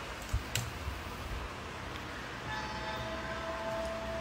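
Quiet room hiss with a couple of light clicks early on, then, about halfway in, a faint steady held note from a studio monitor speaker: the opening of a song demo being played back from a computer.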